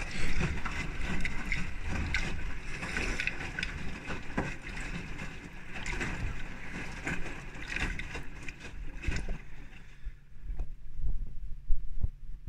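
Beko front-loading washing machine in its rinse: the drum turns the wet laundry, and water sloshes and splashes against the door glass. About three-quarters of the way in, the higher rushing sound drops away, leaving a steady low hum.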